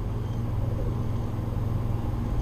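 Steady low background hum with a faint hiss, unchanging throughout, with no clicks or other events.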